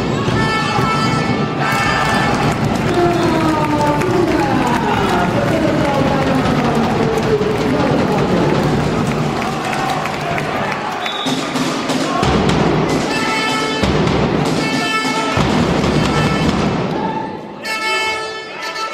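Background music: a song with a singing voice, playing continuously.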